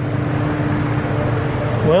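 A steady machine hum: a low drone with a single steady tone over it, cutting off near the end.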